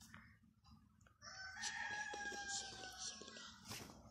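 A rooster crowing once, a single long call of about two seconds that sinks slightly in pitch, followed by a short click near the end.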